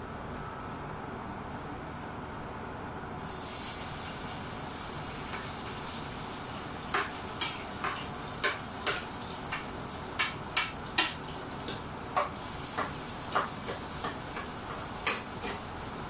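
Garlic and onion going into hot cooking oil in a pan: a sudden sizzle starts about three seconds in and keeps frying steadily. From about seven seconds, a metal utensil scrapes and taps against the pan many times as the garlic and onion are stirred.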